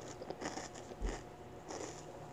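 Bare feet stepping and scuffing on a carpeted floor, with a dull thud about a second in as a child drops to her knees.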